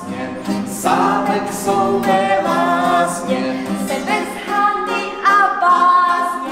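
Several voices singing a song together, with acoustic guitar accompaniment.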